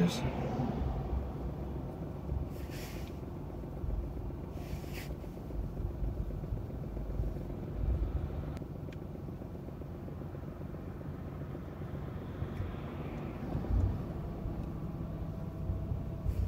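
Car interior noise while driving slowly in traffic: a steady low engine and tyre rumble, with two brief hisses in the first five seconds.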